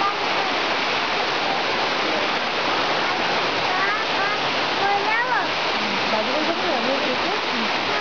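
Steady rush of fast-flowing stream water, with faint voices of people on the trail breaking through near the middle.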